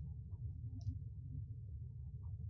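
Faint low hum of room and microphone noise with two faint clicks, the second just under a second after the first.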